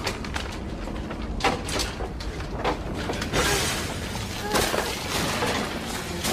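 Earthquake sound effects in a disaster film: a steady low rumble with crashes and shattering of falling debris, the biggest about three and a half seconds in.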